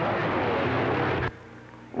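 CB radio receiver hiss with a faint, garbled distant transmission under it. A little past halfway the signal drops out, leaving a quieter background with a low steady hum.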